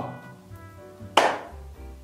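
Soft background music with one sharp hit about a second in that quickly dies away.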